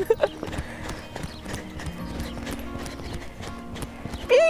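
Hoofbeats of a horse trotting in hand on a sand arena: a run of soft, irregular knocks as she is trotted up for a soundness check.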